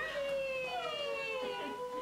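A child crying in one long, wavering wail at being reunited with a returning soldier; the pitch sinks slowly and rises again near the end.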